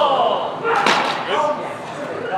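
A single sharp impact about a second in, from armoured fighters clashing at close quarters, with voices calling out around it.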